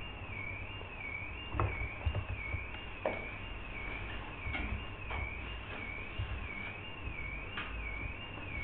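A steady high whine that wobbles up and down in pitch about twice a second, over low room noise, with a few light knocks and clicks.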